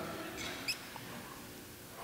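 A quiet pause in a preacher's amplified speech: faint room tone of a church hall, with the voice's echo fading at the start and one brief, faint, high squeak about half a second in.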